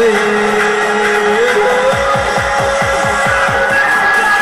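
Backing music for a Vietnamese pop ballad between sung lines: a held melody note that steps up in pitch, then from about halfway a quick drum fill of falling low hits, about five a second.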